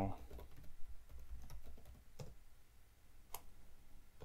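Typing on a computer keyboard: a run of irregular key clicks, the sharpest one about three seconds in.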